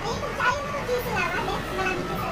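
Young girls' high voices, playful and without clear words, over a steady low background hum of room noise.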